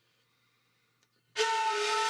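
Near silence, then about a second and a third in, a sudden hissy sound with a steady held high tone starts and keeps going: an added soundtrack sound.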